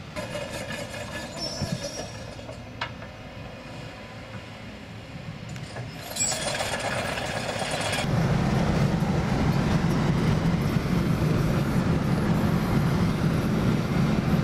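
Quiet outdoor ambience for the first few seconds, then, after a louder stretch, a steady low drone of road and tyre noise heard from inside a car moving at motorway speed, which is the loudest part.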